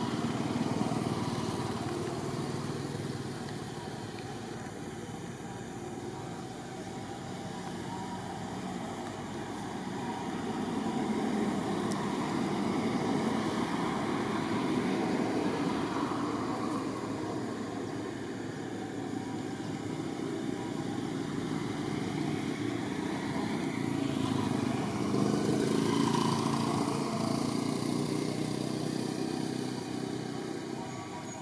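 Continuous motor noise, swelling and fading in loudness every several seconds.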